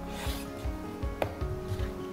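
Soft background music with steady held notes. Under it, a kitchen knife cuts lengthwise through a bell pepper half on a wooden cutting board, with a short crisp slice near the start and one sharp knock about a second in.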